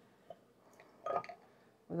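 Mostly quiet handling of glassware: a faint glass tap just after the start and a brief soft sound about a second in, as a shot glass is pressed down into a jar of brine as a fermentation weight.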